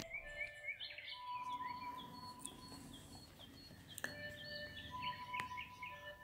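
Faint chirping of small birds: many short, quick chirps dropping in pitch, with a few faint held tones and two soft clicks near the end.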